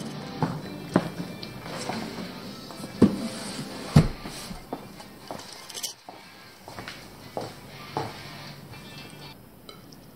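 Scattered knocks and light clinks at uneven intervals, the loudest about one, three and four seconds in, over faint background music.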